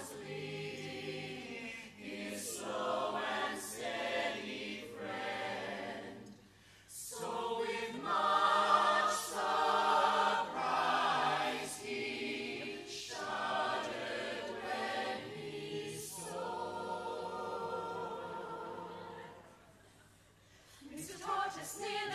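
Mixed-voice a cappella group singing in close harmony, in short phrases with a brief break about six seconds in and a longer near-silent gap shortly before the end.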